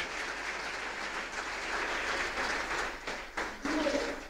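Audience applause, dying down near the end.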